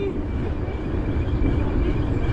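Wind buffeting the microphone and tyre rumble of a mountain bike being ridden on a paved path, a steady low roar, with a faint steady whine above it.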